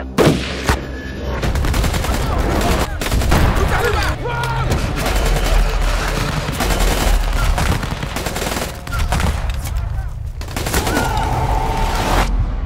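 Heavy gunfire from several rifles: rapid automatic bursts and shots in quick succession, starting sharply just after the start, with a brief lull around nine seconds in.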